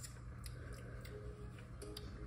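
Stick of butter sizzling faintly in a preheated pot, with a few small sharp crackles.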